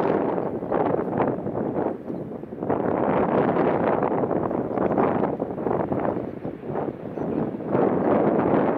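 Wind blowing across the microphone in gusts, a noisy rumble that eases briefly about two and a half seconds in and again around seven seconds in.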